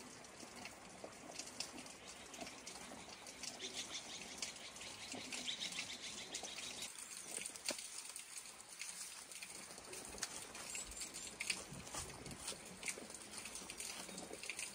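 Small birds chirping outdoors: many short, faint, high calls overlapping, busiest around the middle.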